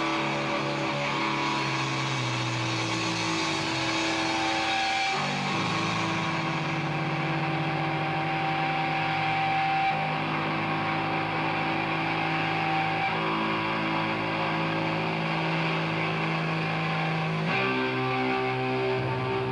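Live rock band with distorted electric guitars holding long sustained chords, each ringing for several seconds before the next one comes in.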